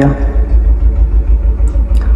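Low, steady rumble inside a vehicle's cabin, its loudness pulsing slightly, with a faint hiss above it.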